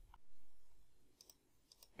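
A few faint clicks of a computer mouse, most of them in the second half, as the program is launched.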